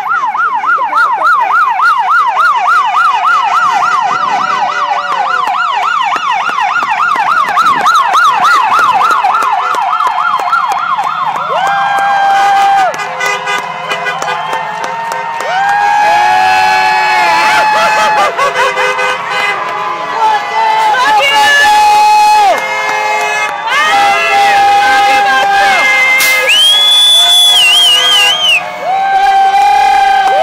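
Police car siren yelping, a fast rising-and-falling wail about three to four times a second, through the first twelve seconds or so. After that, vehicle horns honk in long overlapping blasts at several different pitches until the end.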